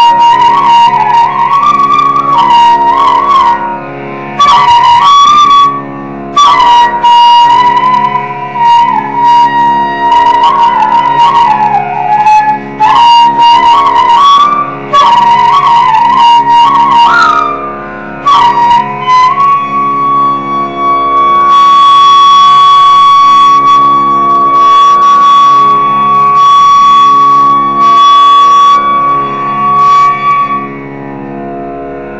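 Carnatic bamboo flute (venu) playing raga Malayamarutham over a steady drone. Ornamented, gliding phrases with short breaks, then a long held note from about two-thirds of the way through.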